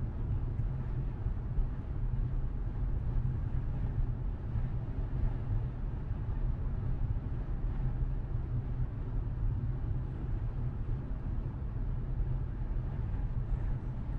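Steady low rumble of engine and road noise inside a moving car's cabin.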